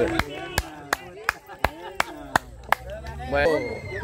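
Hand clapping in a steady rhythm, about three claps a second, celebrating a goal, with shouting voices between the claps. A man's shout rises near the end.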